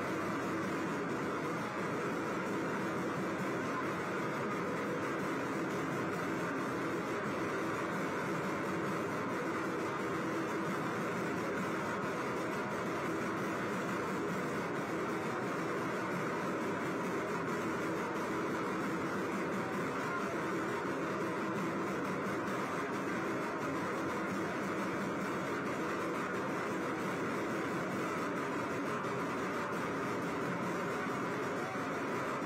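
Steady, continuous street ambience of a roadshow procession: a dense, unbroken wash of vehicle engine noise and crowd din, with no single sound standing out.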